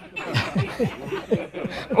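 Laughter: a run of short chuckles, each dropping in pitch, several a second.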